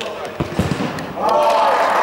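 A ball thuds a couple of times in a large, echoing sports hall. Just over a second in, loud sustained shouting from players or spectators starts and is the loudest sound.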